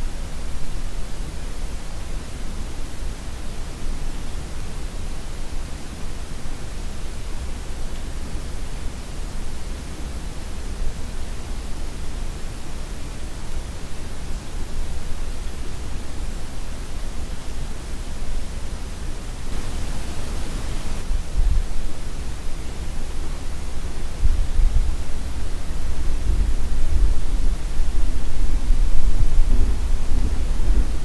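Latex-gloved hands moving close to a binaural microphone: a steady airy hiss with low rumbling whooshes of air on the mic, growing louder over the last few seconds as the hands come nearest.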